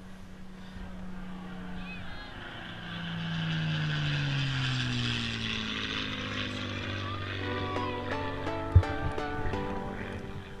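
A motor hums and then goes by, its note falling steadily over a few seconds before settling low. About three-quarters of the way in, plucked-string music starts, and a single sharp thump comes shortly before the end.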